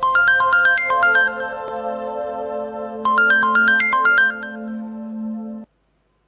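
Mobile phone ringtone: a quick melodic phrase of short notes over a held tone, played twice, then cut off suddenly as the call is answered.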